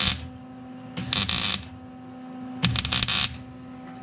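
Arc welding a sheet-metal patch panel into a rusted truck cab floor: two short crackling bursts of about half a second each, about a second and a half apart, in the tack-and-stitch way used on thin sheet.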